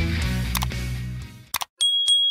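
Rock music fades out over the first second and a half, then two quick mouse-click sound effects and a bright bell ding from a subscribe-button animation, ringing on a single high tone near the end.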